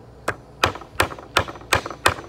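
Wooden-handled claw hammer striking an old wooden board five times in quick succession, about three blows a second, knocking at the old nails in it.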